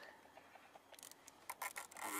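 Faint handling of a plastic cable tie being fitted around wiring: near quiet at first, then a few light, short clicks in the second half.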